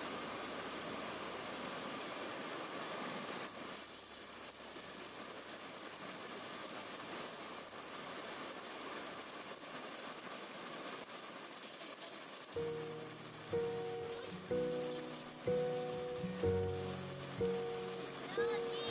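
Sausages sizzling in a small frying pan on a portable gas camping stove, a steady hiss throughout. About two-thirds of the way through, music with a slow, repeating melody and bass comes in over it.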